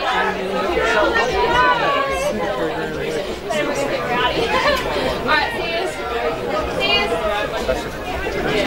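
Sideline spectators talking and calling out over one another, several voices at once.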